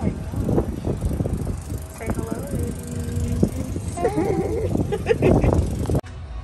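Wind noise buffeting the microphone while riding in a moving open-sided shuttle cart, with voices talking over it in the second half.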